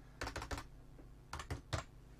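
Computer keyboard keys being typed in short runs: a quick run of keystrokes, then a few more about a second later, while an IP address is entered.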